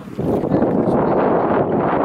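Strong wind buffeting the camera microphone, a loud, steady rumbling rush.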